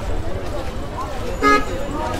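A vehicle horn gives one short toot about one and a half seconds in, over a street crowd's voices.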